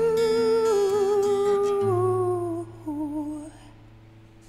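A woman's voice holding a long wordless note with vibrato that slides gently down, then a short second note, over acoustic guitar. A low guitar note starts about halfway and rings out, fading as the song ends.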